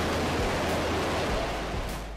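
Steady rushing noise of an intro sound effect over a low, even hum; the rush dies away near the end.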